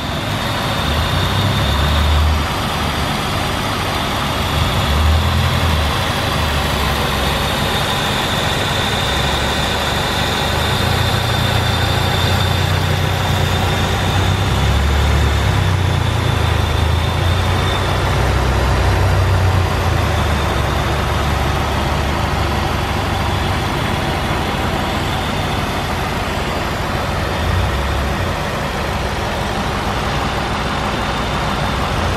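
2008 Buick Lucerne's 4.6-litre Northstar V8 idling steadily with the hood open, with a faint high whine over roughly the first half.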